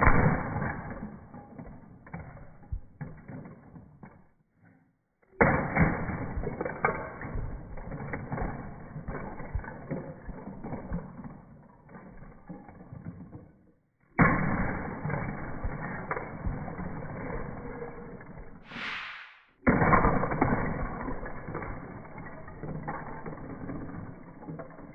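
Lego bricks crashing and clattering as a Lego Saturn V rocket slams into a Lego Hogwarts castle, played back slowed down. Four separate crashes, each starting with a sudden hit and trailing off into a long rattle of scattering pieces, with a brief hiss just before the last one.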